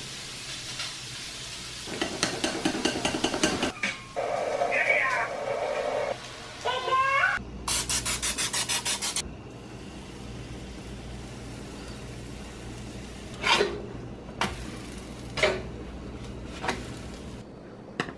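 Pancakes sizzling on a stovetop griddle, followed by a stretch of rapid rhythmic scraping, a short wavering tone and a fast rattle. In the second half a knife cuts food on a wooden cutting board, with four sharp strokes about a second apart.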